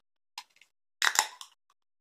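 Pull tab of a drink can cracked open about a second in: a sharp pop with a short fizz of escaping gas, after a faint tick.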